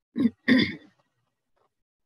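A woman clearing her throat in two short bursts in quick succession, over within the first second.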